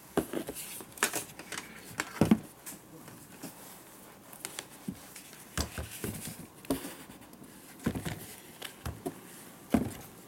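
Handling noise from an AEG ST500 jigsaw, switched off, as its plastic body and power cord are picked up, turned over and set down on a newspaper-covered bench: irregular knocks, clicks and rustles, the loudest about a second in, just after two seconds and near the end.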